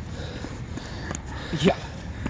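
Footsteps on wet concrete over steady outdoor background noise, with a few faint scuffs.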